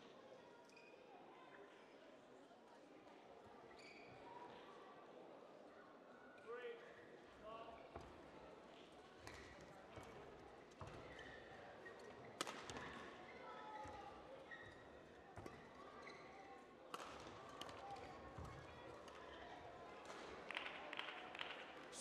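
Faint sounds of a badminton rally in a large hall: scattered sharp racket strikes on the shuttlecock and the players' footwork on the court, with short squeaks.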